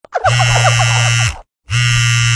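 A harsh buzzer sound effect in two long buzzes, each a little over a second, with a short silent break between them. Over the first buzz is a quick run of short rising yelps.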